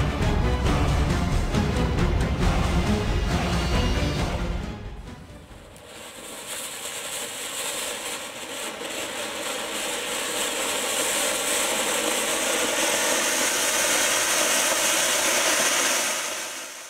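Background music for the first few seconds, then a flower pot (cone ground fountain) firework burning: a steady rushing hiss of sparks that starts about five seconds in, swells over a few seconds and then holds steady.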